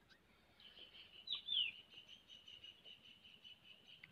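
Faint bird chirps: two short calls sliding down in pitch about a second and a half in, over a faint steady high-pitched tone.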